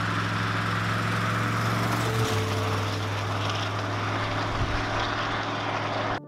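The 1994 GMC Suburban's small-block V8 engine running under throttle, a steady low drone that shifts once a little over two seconds in.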